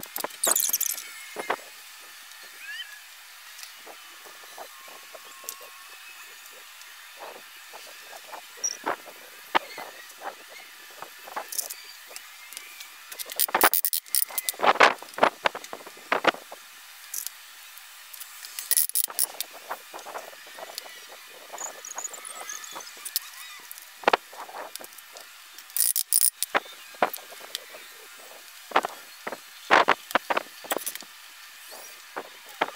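Scattered taps, clicks and knocks of wooden boards and biscuits being handled during a glue-up, with a silicone brush working glue along the board edges. The sounds come in loose clusters, busiest around the middle and again near the end.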